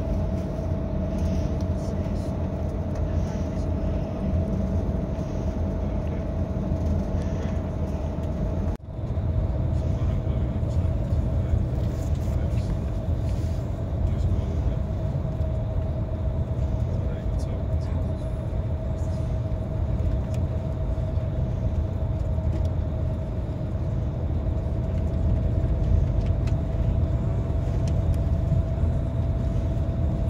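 Steady low rumble of a coach bus on the road, heard inside the passenger cabin, with a faint whine held on one pitch over it. It breaks off for an instant about nine seconds in, then the same rumble carries on.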